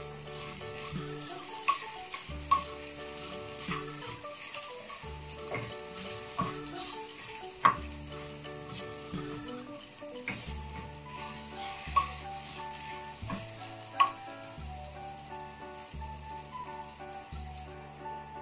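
Chicken slices and green pepper sizzling in a frying pan while a wooden spatula stirs them, with a few sharp taps of the spatula against the pan. Background music plays underneath.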